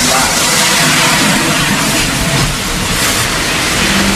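A loud, steady noise with a low rumble, with no voices over it.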